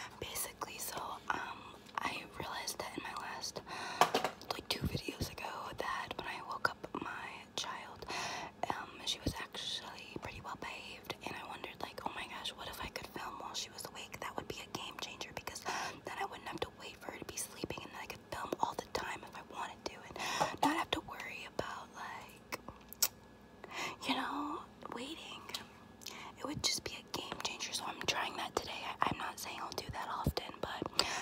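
A woman whispering close to the microphone, broken by many short sharp clicks and taps scattered throughout.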